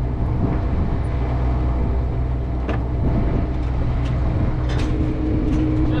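Steady low drone of an idling engine, with a few sharp clicks and knocks as a truck's hood is lifted open, about two and a half seconds in and again near five seconds.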